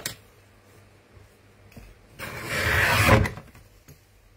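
A rubber stamp sheet being worked on a Rexel guillotine paper trimmer: a soft click at the start, then about two seconds in a loud rasping scrape lasting about a second that ends in a low thud.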